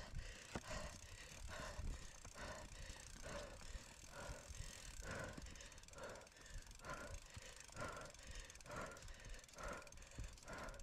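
A mountain-bike rider breathing hard from exertion, in a steady rhythm of about one breath a second, over the low rumble of the bike rolling over rough ground.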